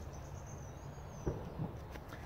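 A knife being slid into a sheath hung at the chest, with two small knocks about halfway through, over a quiet woodland background. A faint, thin, high whistle lasts about a second near the start.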